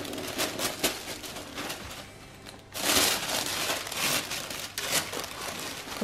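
Tissue paper rustling and crinkling as it is unfolded from around a garment in a box. Small crackles come first while a ribbon is pulled loose; the paper is loudest from about three seconds in.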